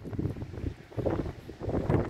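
Wind buffeting the microphone in uneven gusts, louder about a second in and again near the end.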